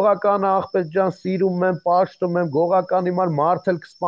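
A man talking fast and continuously in Armenian, over a faint steady high-pitched tone.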